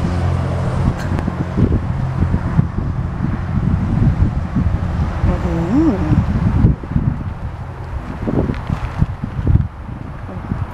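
Wind buffeting a handheld camera's microphone outdoors in irregular low rumbles. A steady low hum fades out in the first second, and a brief voice sound comes about six seconds in.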